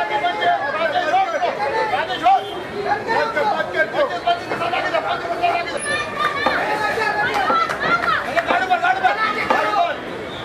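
Several people talking and calling out at once, with overlapping voices.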